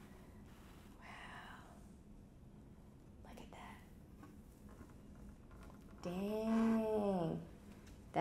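Mostly quiet, with faint rustles and a breath, then about six seconds in a woman's drawn-out admiring 'ooh', lasting over a second, that rises and then falls in pitch.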